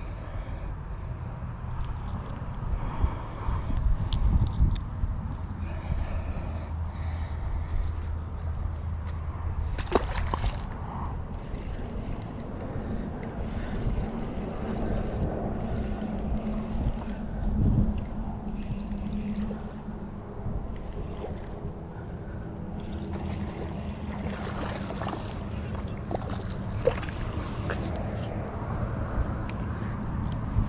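Water sloshing close by with handling noises and a few sharp clicks as a spinning rod and reel are worked; a low steady hum runs under parts of it.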